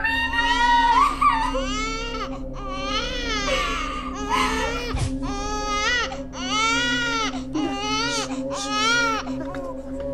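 A baby crying: a string of high wails that rise and fall, about one a second, over a steady low hum.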